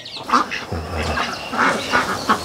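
A pen of month-old ducklings calling, many short calls in quick succession.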